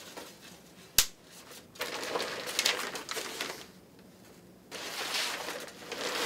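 A single sharp click about a second in as the plastic clamp on the respirator's breathing tube is squeezed tight, followed by two spells of crinkly rustling as the disposable Tychem hood and corrugated breathing tube are handled.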